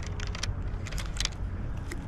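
Fishing reel being cranked to retrieve the line, giving a few light, uneven clicks over a steady low background rumble.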